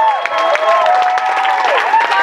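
Audience applauding, with long drawn-out whooping cheers held over the clapping.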